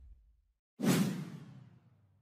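Whoosh sound effect for an animated title: it starts sharply about a second in and fades away over about a second. In the first half-second the tail of a lower, rumbling effect dies away.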